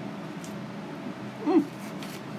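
A man's short appreciative "mmm" through a mouthful of food, rising then falling in pitch, about one and a half seconds in, over a steady low hum.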